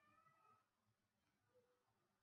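Near silence: faint room tone, with a brief, faint rising tonal sound in the first half second.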